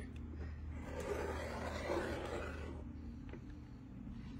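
Rotary cutter blade rolling along a ruler edge and slicing through layers of quilt fabric on a cutting mat: a soft scraping that lasts about two seconds, over a steady low hum.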